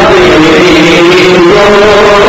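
Male voice singing a naat into a handheld microphone, loud, holding a long note that steps up in pitch about one and a half seconds in.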